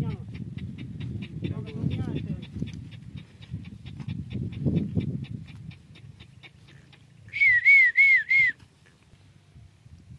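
A dog giving four quick high-pitched yelps in a row, each rising then falling, about three-quarters of the way in, over low murmuring and a steady fast ticking.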